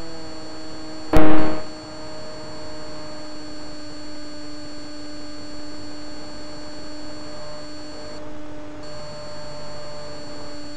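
Steady electrical hum made of several constant tones, with one loud, sharp knock about a second in that dies away within half a second.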